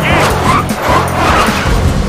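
Cartoon soundtrack music mixed with short, loud vocal outbursts from an angry cartoon character stuck in traffic.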